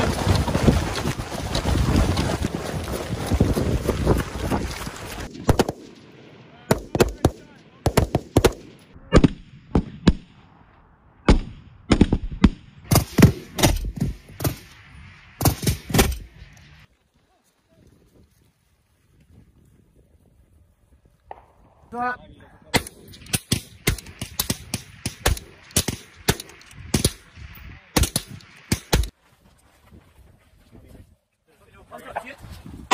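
Rifle gunfire from several shooters on a firing line: many sharp shots in quick, uneven succession, in two spells with a lull of a few seconds between them. The first few seconds are a loud, dense rushing noise before the shooting starts.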